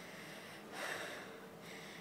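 A single short breath or sniff close to the microphone, about a second in, over quiet room tone.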